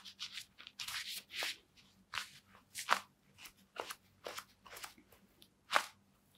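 Adidas Predator Accuracy GL Pro Hybrid goalkeeper gloves handled and flexed in the hands: a string of short crunching, rubbing sounds from the latex and knit creasing, about a dozen in all. The loudest come about three seconds in and near the end.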